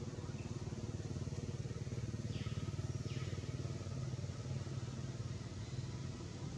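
A motor engine running with a low, steady rumble that swells a little in the middle.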